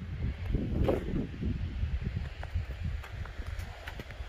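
Wind buffeting the microphone outdoors: an uneven low rumble that rises and falls.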